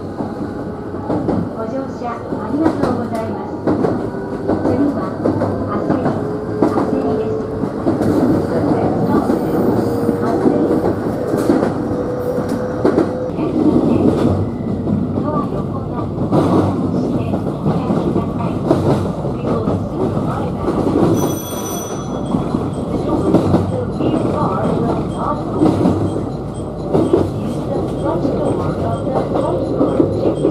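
Electric train running at speed along the track, heard from the front of the train: a steady rumble of wheels on rail with irregular clicks over joints and points. A faint whine rises slowly in pitch through the first dozen seconds, and a short high-pitched beep sounds about two-thirds of the way through.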